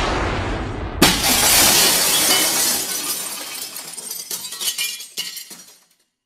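Glass shattering sound effect: a sharp crash about a second in, followed by many small tinkling pieces that die away over several seconds. The first second holds the fading tail of an earlier noisy swell.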